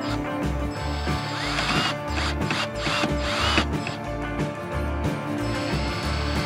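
Cordless drill/driver driving a screw into plywood, running in several short bursts in the middle, over background music.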